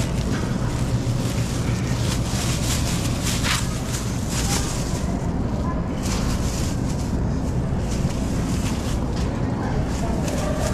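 Metal shopping cart rolling across a hard store floor: a steady low rumble from the wheels, with a few brief rattles of the wire basket in the middle.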